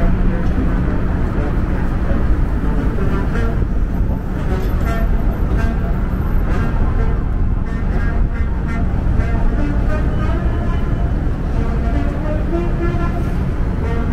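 Downtown street traffic: a steady low rumble of passing vehicles, with indistinct voices of people talking nearby through the second half.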